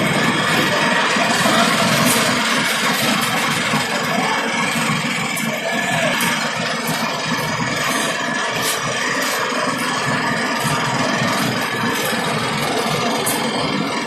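A truck's engine idling steadily, with music from loudspeakers mixed in and sharp light ticks now and then.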